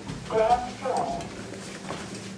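Two brief, quiet bits of speech over faint background hiss.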